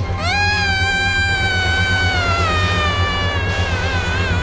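A long, high-pitched wailing scream from an anime character crying. It rises sharply at the start, then slowly sags in pitch. A second wavering cry starts near the end, all over a steady pulsing music bed.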